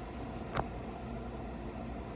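Steady low room hum with no other sound, except for a single small click about half a second in.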